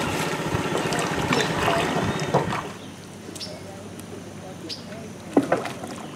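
Water splashing and sloshing as a canoe moves across the river, stopping abruptly after about two and a half seconds. It is followed by a quiet stretch with a few short knocks, the loudest near the end.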